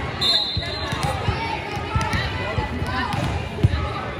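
Volleyball gym ambience: voices of players and spectators with repeated ball thumps echoing in the hall. There is a short, high, steady referee's whistle just after the start and one sharp ball smack near the end.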